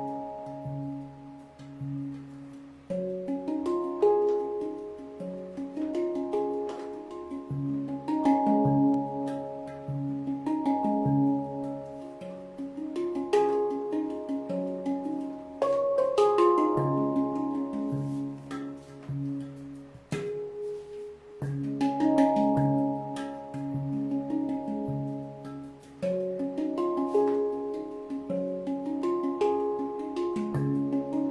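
Steel handpan played with the hands: ringing notes struck in a flowing melodic pattern over repeated low bass notes. The playing swells louder and drops softer in turns.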